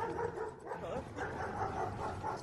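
Dobermanns barking.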